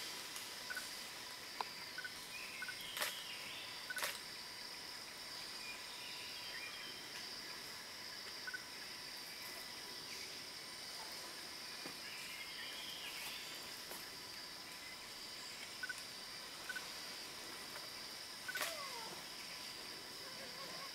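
Steady outdoor insect chorus, a continuous high drone, with scattered short chirps, a few sharp clicks and a short falling call near the end.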